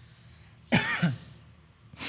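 A man coughs once, sharply, with a falling voiced tail, about three-quarters of a second in; a softer breathy burst follows at the very end.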